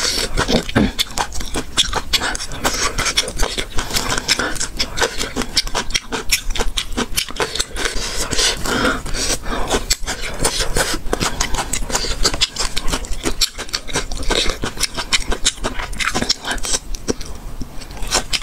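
Close-miked chewing and mouth sounds of someone eating chili-coated strips of food: a dense, irregular run of wet clicks and crunches.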